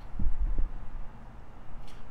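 Two dull, low thumps close to the microphone, about half a second apart in the first second, then quiet room tone.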